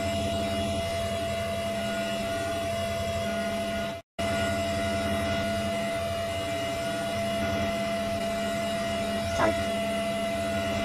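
Steady electronic drone made of held tones, with a split-second dropout about four seconds in.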